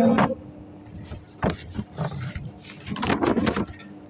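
A steady low electrical hum under several brief scuffs and rustles of handling as fingers work the front panel of an electronic motor protection relay.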